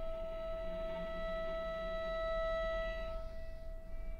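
Solo cello in scordatura tuning holding one long, high bowed note at a steady pitch; its brighter overtones thin out about three seconds in.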